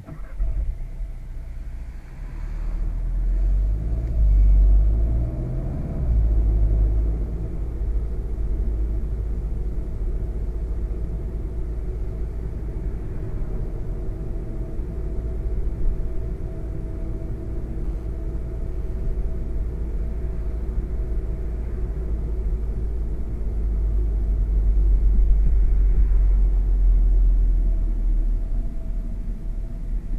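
A 2016 VW Golf GTI Performance's 2.0-litre turbocharged four-cylinder engine and road noise heard from inside the cabin while driving at town speeds. A deep rumble dominates, cutting in abruptly at the start and swelling about four seconds in and again near the end.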